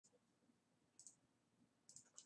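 Near silence with a few faint computer mouse clicks: a quick pair about a second in and another near the end.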